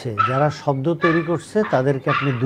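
Only speech: a man talking steadily.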